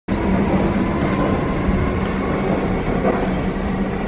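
Train running at a station platform: a steady dense rumble with a constant low hum.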